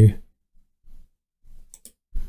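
Computer mouse clicks: two faint clicks close together near the end.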